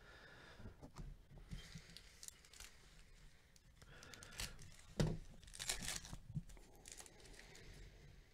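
Foil wrapper of a Panini Chronicles baseball card pack being handled and torn open by hand: irregular crinkling and tearing, loudest about five to six seconds in.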